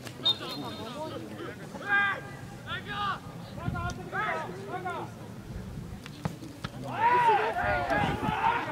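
Footballers calling and shouting to each other on an open pitch as a free kick is taken. A short knock comes about six seconds in, and the shouts grow louder and overlap right after it.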